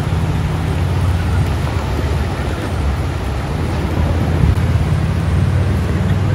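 Steady wind buffeting the microphone, a low rumble over the wash of breaking ocean surf.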